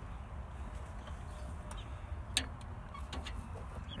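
Plastic water-line tubing and push-fit fittings being handled at a hose faucet: a few faint clicks over a low steady rumble.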